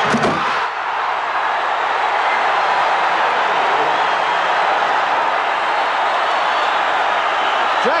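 Arena crowd cheering steadily after a basket, with a few sharp knocks in the first half-second.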